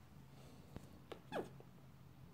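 A kitten gives one short mew that falls quickly in pitch, about a second and a half in, shortly after a faint click.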